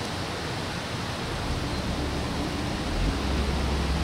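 Steady outdoor background noise: an even hiss with a low rumble that grows louder about one and a half seconds in.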